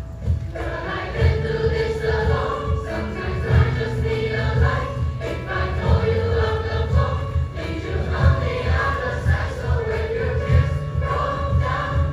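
A mixed choir of teenage boys' and girls' voices singing a sacred song, sustained and continuous.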